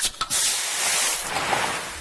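A Pepsi Max can's pull tab snapping open with two sharp clicks right at the start, followed by a loud steady fizzing hiss of carbonated cola that fades near the end.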